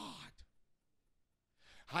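A man breathing close into a handheld microphone between phrases: a breathy exhale trailing off in the first half-second, a short near-silent pause, then a quick intake of breath just before he speaks again near the end.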